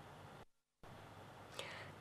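Near silence: faint hiss that drops out completely for a moment about half a second in, then a faint breath-like sound near the end.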